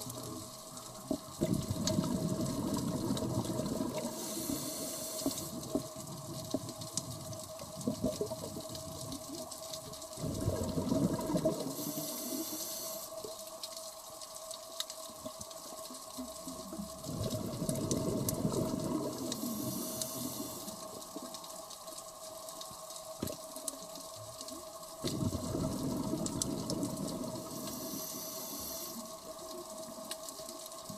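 Scuba diver breathing through a regulator underwater: four breaths, each a long rumbling burst of exhaled bubbles followed by a short hissing inhalation. A steady faint hum and scattered clicks run underneath.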